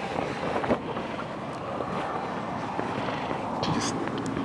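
Steady wind noise on the microphone, with the rustle of a shiny velvet church robe being pulled on over someone's head.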